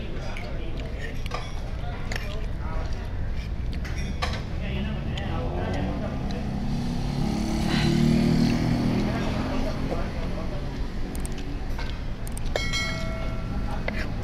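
Eating sounds: a metal fork and spoon clicking and scraping on a ceramic plate, with chewing. Under it is a steady traffic rumble from the road, which swells in the middle as a vehicle passes. A short metallic ring comes near the end.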